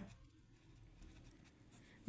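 Faint scratching of a pen writing on lined notebook paper.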